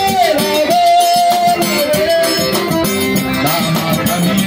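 Live forró played by a small street band: a man sings over piano accordion, a zabumba bass drum beaten with a stick and a small hand drum, with a steady dance rhythm.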